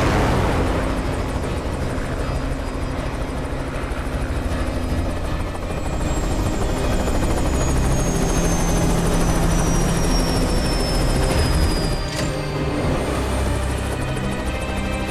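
Dense film sound mix of dramatic score over a deep, steady rumble, with a fast pulsing texture high up. A thin whistle slowly falls in pitch through the second half. A sharp crash comes at the start and another about twelve seconds in.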